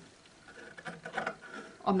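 Scissors snipping through folded tulle: a few faint cuts.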